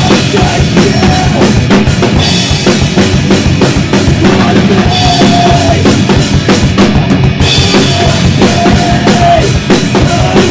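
Live band playing loud: a drum kit hit in a dense, steady pattern with electric bass and guitar.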